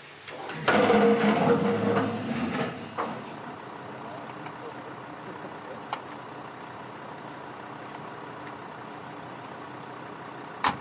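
About three seconds of clatter and voices from a roomful of people getting up from tables. Then a steady, even noise of a military truck running.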